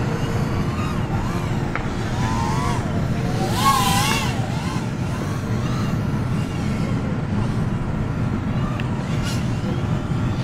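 Tiny whoop drone's motors and propellers whining, the pitch wavering up and down with throttle, loudest as it passes close about four seconds in. Steady wind rumble on the microphone underneath.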